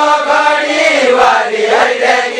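A Deuda folk song sung by a group of voices in unison, unaccompanied, as a drawn-out chanted phrase of held notes that glide up and down.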